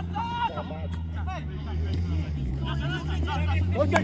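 Players and spectators shouting and calling across a football pitch, several voices at a distance, over a steady low hum.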